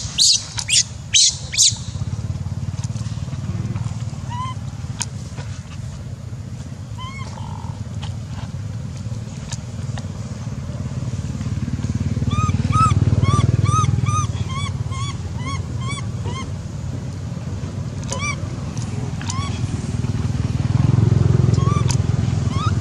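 Macaque monkeys calling: a few sharp screams in the first two seconds, then scattered short calls and, about halfway through, a few seconds of quick, arched, high coos, all over a steady low rumble.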